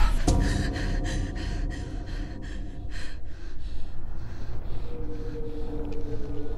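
A woman gasping awake, then breathing in quick, shaky breaths, about three a second, that fade over a few seconds. A low steady film-score note comes in near the end.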